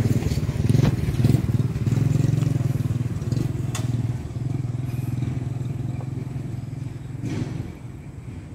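A small engine idling steadily, a low pulsing hum, with a few light knocks; it grows quieter near the end.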